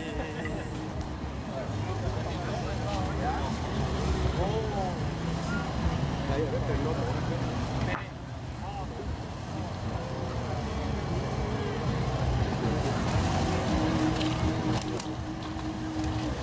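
Onlookers' voices talking in the background over a steady low rumble.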